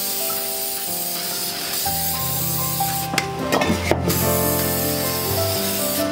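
Aerosol spray paint can hissing as paint is sprayed onto the painting, with a few sharp clicks around the middle.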